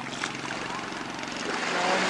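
Steady drone of a long-tail boat engine running, with a rush of noise swelling near the end.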